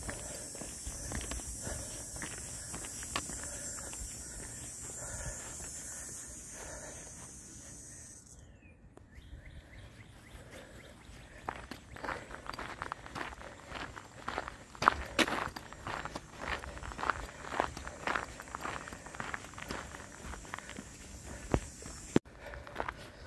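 Footsteps on a gravel trail, about two steps a second, starting about eleven seconds in. Before them, a steady high-pitched drone that cuts off suddenly about eight seconds in.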